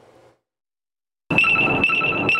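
After a second of silence, an impounded rental electric scooter starts sounding its alert, a steady high electronic tone with a slight warble. It is being pinged by someone trying to rent it.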